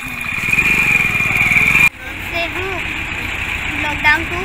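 A motor vehicle's engine running close by, growing louder over the first two seconds, then cut off abruptly.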